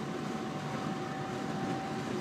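Class 323 electric multiple unit running at speed, heard from inside the carriage: a steady rumble of wheels on the track with a thin, steady high hum from the train.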